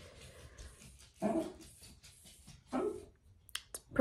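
A dog giving two short, soft vocal sounds about a second and a half apart, followed by two faint clicks near the end.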